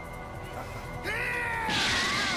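Cartoon soundtrack: a character lets out a long, loud yell starting about a second in, over a faint background score. A loud rushing noise, like an energy blast, joins it near the end.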